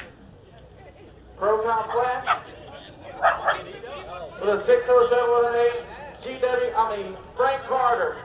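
Small dog whining and yelping in short high-pitched outbursts from about a second and a half in, with one longer held whine in the middle.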